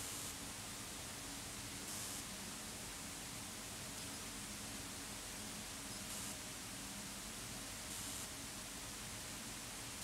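Steady background hiss of a quiet lecture room, with a few brief, soft rustles.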